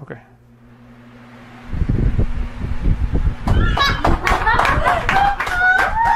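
An electric fan is switched on: a faint hiss rises, then wind buffets the microphone with a loud, crackling low rumble. From about halfway, high-pitched, wavering voice sounds run over the wind noise.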